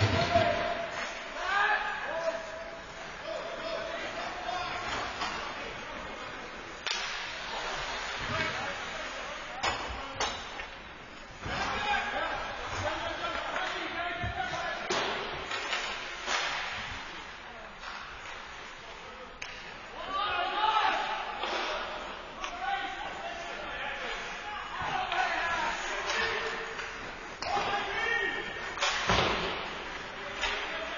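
Ice hockey play echoing in a large indoor rink: players calling and shouting to each other, with scattered sharp knocks and thuds of sticks and the puck against the boards.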